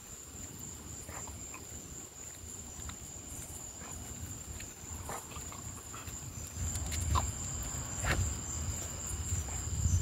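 Steady high-pitched chirring of crickets. A low rumble grows louder in the second half, with a few sharp ticks about seven and eight seconds in.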